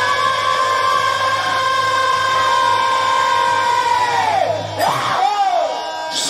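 Bhajan singers holding one long high sung note for about four seconds, which then falls away, followed by short sliding vocal phrases.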